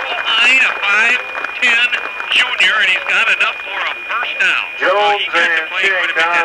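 Play-by-play commentators talking, with a steady high-pitched whine underneath.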